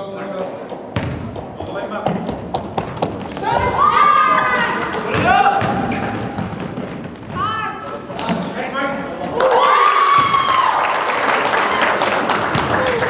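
A basketball bouncing on a hardwood gym floor, a run of sharp knocks in the first few seconds, then short high-pitched sneaker squeaks on the floor as players run up the court, in an echoing gym with voices around.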